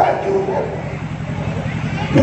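A man's voice preaching through a handheld microphone and PA system, with no clear pauses between words.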